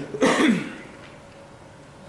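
A man clears his throat once into a close handheld microphone: a short, loud, raspy burst with a falling pitch, about half a second long, a quarter second in.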